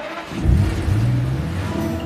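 A car engine revving up as the car pulls away, starting about half a second in, with its pitch rising and then settling. Music plays under it.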